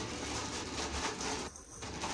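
Plastic mailer bags and packaging crinkling and rustling as hands dig through them, with a brief pause about three-quarters of the way through.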